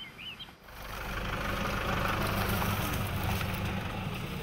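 Pickup truck's engine running steadily as it drives along a rough dirt track, beginning suddenly just under a second in after a brief quiet moment with a faint high chirp.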